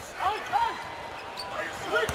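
A basketball being dribbled on a hardwood court, with two short high squeaks, typical of sneakers on the floor, in the first second.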